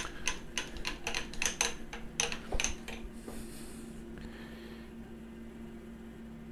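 Light metallic clicks and clinks, about a dozen over the first three seconds, from metal parts at a milling machine. A steady low machine hum continues alone after them.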